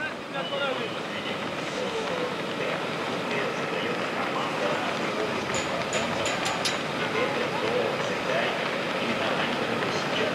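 Outdoor road-race ambience: a steady rushing noise with faint voices in it, and a quick run of five or six sharp clicks about five and a half seconds in.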